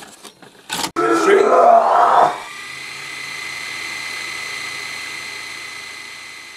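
Intro sound effect on a video recorder: a couple of clicks, a garbled voice-like burst, then a steady motor whir with a high whine, as of a VCR tape running at fast-forward, slowly fading away.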